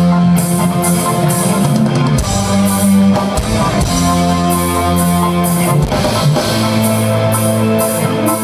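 Live rock band playing a song: electric guitars and keyboard in held chords over a drum kit with cymbals.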